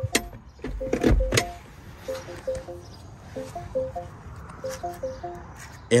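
A few clunks and knocks from a manual car seat being adjusted by lever, in the first second and a half. Under them a simple tune of short notes plays on.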